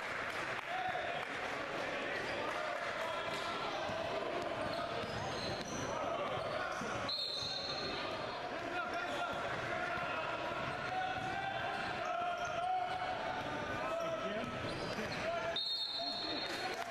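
Live basketball game sound in a gym: a ball bouncing on the court under the continuous chatter and calls of players and spectators. The sound breaks off briefly about seven seconds in.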